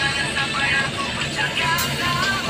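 Radio music with a wavering melody playing over the steady running noise of a city bus, heard from inside the passenger cabin.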